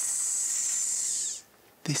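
A man's long hiss through his clenched teeth, lasting about a second and a half before it cuts off.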